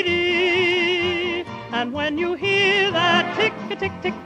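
A solo singer with a wide vibrato holds one long note for about a second and a half, then sings shorter phrases over instrumental accompaniment.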